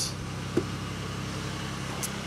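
Pontiac Aztek's 3.4-litre V6 idling steadily, heard from outside the car, with a single light click about a quarter of the way in.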